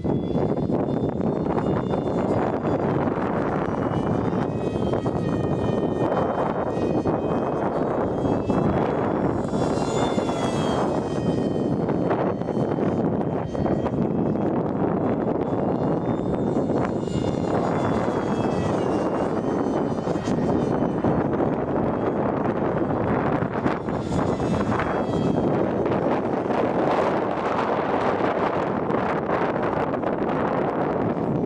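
Electric ducted fan of a small RC F-18 jet whining in flight, its high pitch rising and falling several times as the jet passes, most clearly about ten seconds in, over a steady rushing noise.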